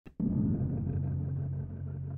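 Low, dark ambient drone from the background music: a steady rumble of held low tones that starts just after the beginning.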